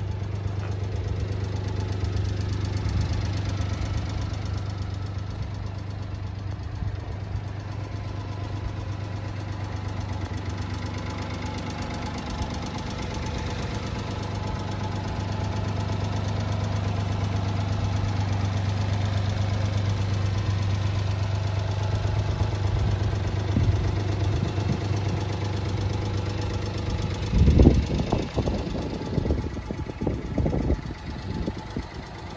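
Small three-cylinder engine of a 1995 Honda Acty kei truck idling steadily with a low hum. A short, loud burst of noise comes near the end.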